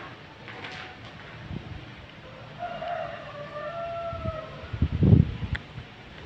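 Footfalls and handheld-camera bumps as someone walks through a derelict room, loudest in a cluster of heavy low thumps about five seconds in, with a sharp click just after. A faint high, pitched call or tone is heard for about a second and a half in the middle, over a low background rumble.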